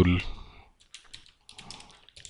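Computer keyboard typing: a run of faint, quick key taps as a word is typed.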